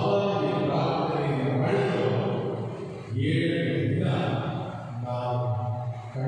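A man's voice chanting a prayer in a steady, sung recitation, in long held phrases with a brief break about three seconds in.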